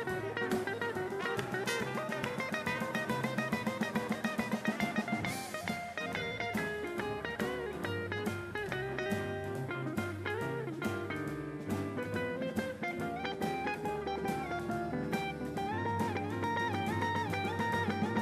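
Small jazz combo playing an instrumental passage live: double bass plucked in steady low notes, drum kit with regular cymbal strokes, and melody lines above, with no singing.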